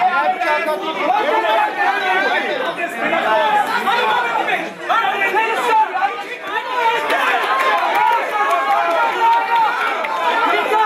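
Spectators' voices talking and shouting over one another, a dense crowd chatter with no single voice standing out.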